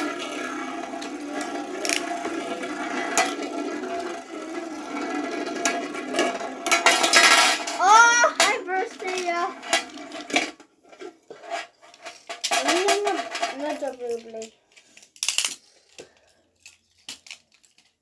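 Two Beyblade spinning tops whirring and scraping on a large metal tray, with sharp clinks as they hit each other. The whirring stops about ten seconds in, leaving scattered clicks as the tops are picked up, with children's voices.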